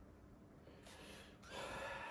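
A man's audible breaths: a faint one a little under a second in, then a longer, louder one about a second and a half in.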